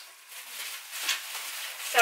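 Plastic bubble wrap being crumpled and handled, with the rustle of a fabric drawstring bag: soft, irregular crinkling.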